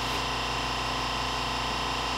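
Steady machine hum with a low rumble and several constant tones, unchanging throughout.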